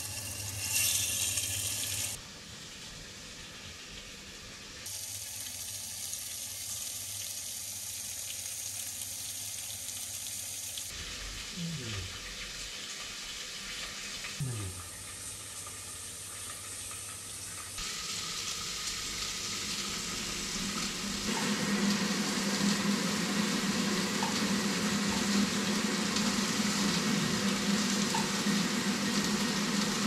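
Water running from a kitchen tap, a steady rush that gets louder about two-thirds of the way through.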